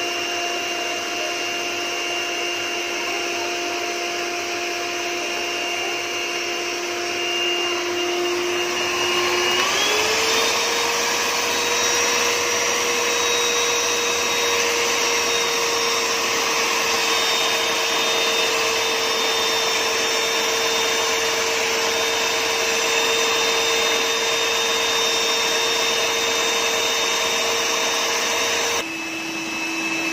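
Singer electric hand mixer on its stand, its beaters whisking a liquid mixture in a plastic bowl: a steady motor whine that steps up in pitch and gets louder about a third of the way in, then drops back to a lower pitch near the end.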